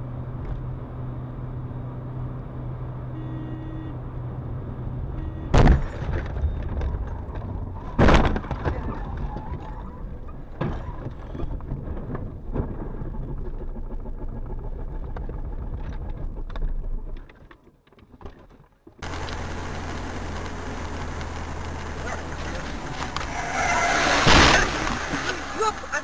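Car cabin road and engine noise picked up by a dash camera, broken by two loud bangs about five and eight seconds in. Near the end the noise drops away, and a different steady road noise follows.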